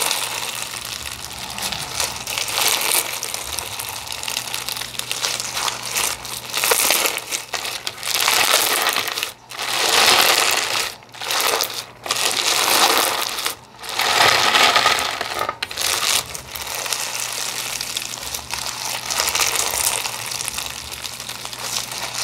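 Crunchy lava rock slime with a clear base being squeezed, pressed and stretched by hand, its embedded crunchy beads crackling and crunching. The crunching gets louder in several spells through the middle, each cut off by a brief pause.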